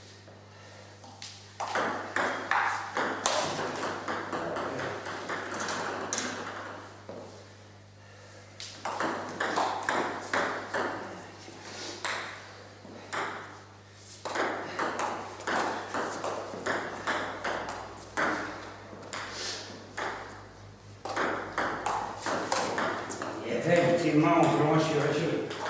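Table tennis rallies: the ball clicking back and forth off the bats and the table in quick alternation, in several bursts of a few seconds each with short pauses between points.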